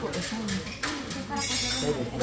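Quieter voices of several people talking, with a short hiss about one and a half seconds in.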